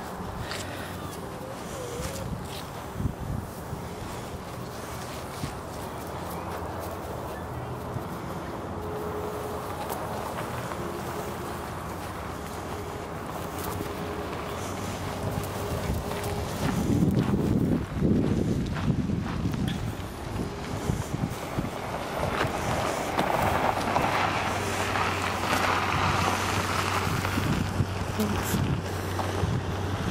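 Street ambience: a motor vehicle's engine running steadily, with wind on the microphone. The noise swells louder about halfway through.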